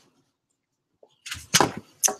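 A brief swishing rustle about a second and a half in, from an arm and apron swung fast to fling watercolour paint at the paper.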